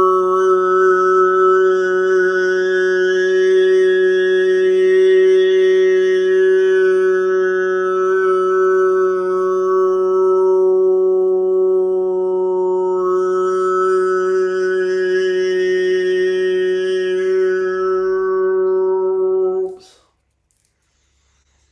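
A man's voice holding one long, steady sung tone in vocal toning. The vowel shifts slowly while the pitch stays fixed, and the tone cuts off just before the end.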